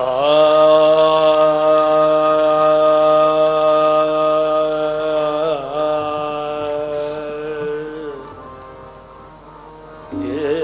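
Sikh kirtan: ragis singing one long held note over harmonium. The note wavers briefly about five seconds in and fades out around eight seconds in.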